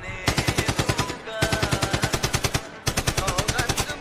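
Machine-gun fire sound effect dropped into a DJ remix: three rapid bursts of about ten shots a second, each lasting roughly a second.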